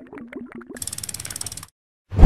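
Animated outro sound effects: a quick run of clicks over a short wobbling pitched tone, then a fast, even rattle of clicks, about fifteen a second, that cuts off suddenly near the end.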